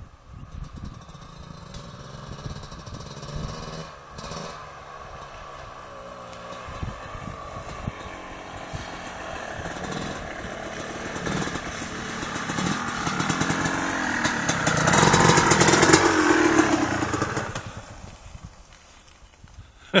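Off-road motorcycle approaching along a muddy track, its engine note rising and falling with the throttle and growing steadily louder to a peak about fifteen seconds in. It then drops away quickly a couple of seconds before the end.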